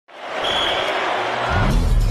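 Edited sound-design effects: a rushing noise, then about one and a half seconds in a deep bass hit whose pitch bends upward, leading into a screen-shattering effect.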